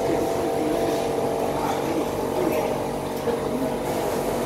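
Steady mechanical drone of a running motor, holding one even pitch, with voices faint behind it.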